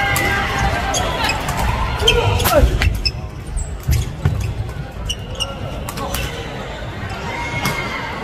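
A badminton rally in a large gym hall: repeated sharp smacks of rackets striking the shuttlecock and sneakers squeaking on the wooden court floor, with voices near the start and again near the end.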